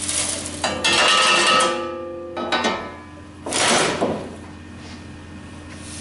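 Sand poured through a sheet-metal riffle splitter, followed by metal-on-metal clatter from the steel pans. A knock about a second in leaves a ringing that fades, and a louder scraping clatter comes just past the middle as the two collecting pans are pulled out.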